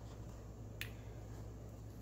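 A single short, sharp click about a second in, over a faint steady low hum in a quiet room.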